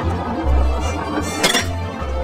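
Background music with a steady bass beat, and one clink about one and a half seconds in as a marble drops onto the next ramp of a marble run.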